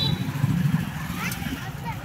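Busy town street traffic: motorcycle engines running close by over a steady low rumble, with voices of passers-by.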